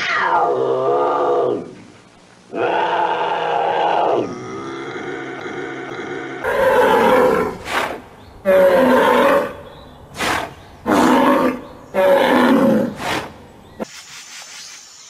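Bobcat calls: a yowl that falls steeply in pitch, then a second, held call. Then a bull bellowing four times in long, loud calls, with short calls between.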